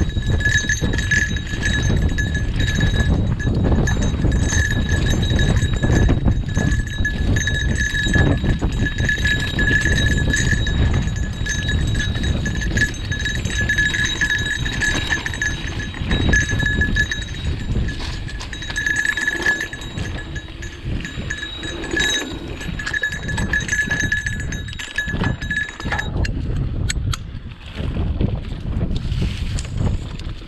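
A bell on a mountain bike ringing continuously with one steady pitch, pulsing as the bike jolts over rough singletrack, over the low rumble and rattle of the ride; the ringing stops about 26 seconds in.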